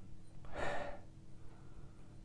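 A man sniffing a shot glass of distilled spirit: one short breath drawn in through the nose, about half a second in.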